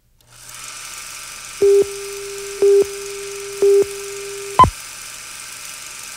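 Electronic beep sound effect: a steady low tone with three louder beeps about a second apart, ending in one sharp higher blip, over a faint hiss and hum.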